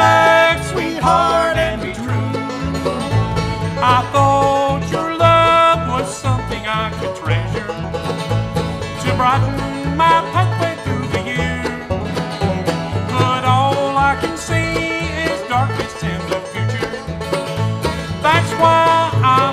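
Bluegrass band playing an instrumental break between verses: fiddle, banjo, mandolin and acoustic guitar over a steady upright-bass pulse.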